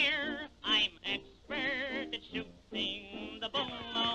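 Cartoon-soundtrack music with a voice singing short, wavering phrases with a heavy vibrato, broken by brief pauses.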